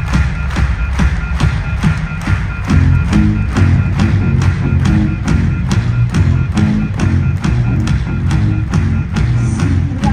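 Live rock band with two drum kits and electric guitar playing at full volume: a steady, fast drum beat, with a low, heavy guitar riff coming in about three seconds in.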